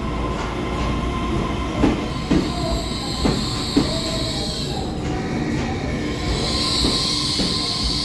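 Taiwan Railway EMU3000 electric multiple unit pulling slowly into the platform and braking to a stop, its wheels clicking over rail joints a few times in the first half. A high-pitched brake squeal grows over the last couple of seconds as it halts.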